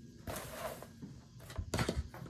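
A large piece of cross-stitch fabric rustling as it is shaken out and refolded, with a few soft knocks in the last half second.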